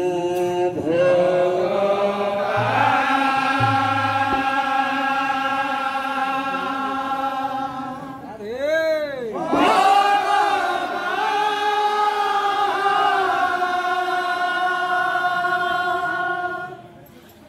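Group of men chanting an Odia devotional kirtan in long held notes, with a short swooping rise and fall in pitch about halfway through.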